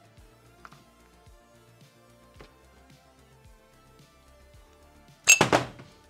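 Faint background music with a few light clicks as a mountain bike air shock is handled, then, near the end, one short, loud metallic clatter.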